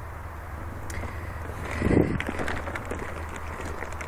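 Handling noise from a hand-held camera as the person filming gets up from a crouch: rustling, faint clicks and a louder low bump about halfway through, over a steady low rumble.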